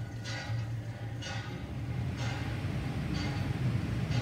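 Water from a hand-operated well pump splashing into a metal pot in surges about once a second, one with each pump stroke, over a steady low hum.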